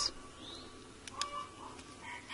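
Quiet outdoor background with a faint short bird chirp and a few soft clicks and rustles from the plant's pot being handled.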